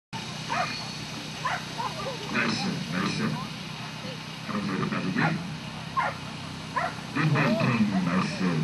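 Border collie barking in short bursts at irregular intervals, with people talking.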